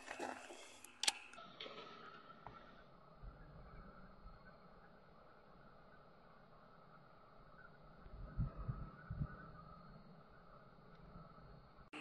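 Quiet background with handling noise from a handheld thermal imager: a sharp click about a second in, a few small knocks, and low thumps around eight to nine seconds in, over a faint steady hum.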